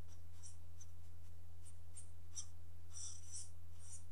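Green Sharpie felt-tip marker writing on paper: a series of short, high-pitched squeaky strokes as symbols are written, with a slightly longer stroke about three seconds in. A steady low hum runs underneath.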